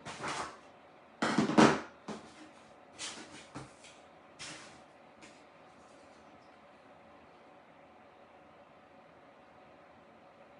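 Rummaging by hand through craft supplies: a run of short rustles and knocks over the first few seconds, the loudest about a second and a half in.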